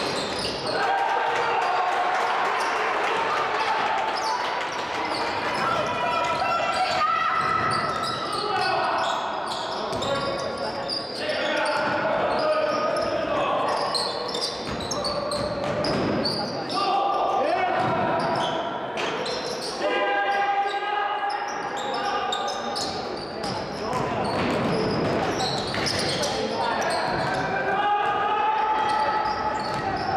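Basketball game play in a large echoing gym: the ball bouncing on the wooden court and players and coaches shouting to one another, on and off throughout.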